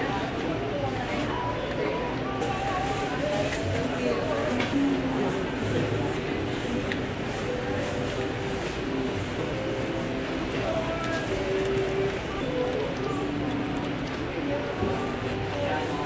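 Indistinct voices of several people talking over one another throughout, with no words clear enough to make out.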